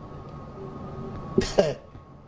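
A single short cough about one and a half seconds in, over a faint steady room hum.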